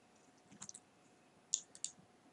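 Faint computer mouse button clicks: a quick pair about half a second in, then two more single clicks near the end.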